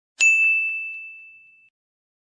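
A single bright bell-like ding, struck about a fifth of a second in and ringing out as one clear tone that fades away over about a second and a half.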